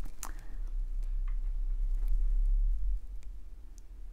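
Low handling rumble from a phone being moved in close to a canvas, swelling in the middle and then settling, with a few faint clicks.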